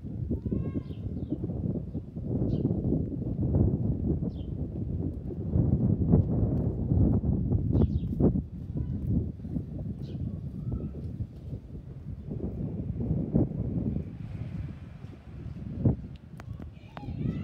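Wind rumbling unevenly on a phone microphone, with short high chirps, like small birds, now and then.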